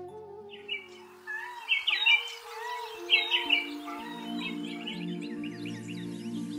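Background music with long held notes, joined from about half a second in by repeated high bird chirping and calling, as on a morning soundtrack.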